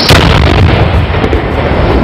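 A house blowing up in a single large explosion: one sudden loud blast, then a deep rumble that dies away over about two seconds.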